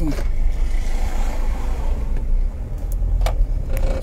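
Road traffic noise: a steady low rumble with a broad swell of hiss about a second in, like a vehicle going past.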